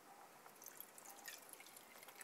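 Faint trickle and drips of denatured alcohol being poured from a bottle into a small metal cat food can stove, starting about half a second in.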